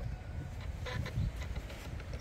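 An A3 arc fusion splicer's motors are pressing two optical fibres together and aligning them before the splicing arc, giving a few faint brief mechanical sounds about halfway through, over a low rumble.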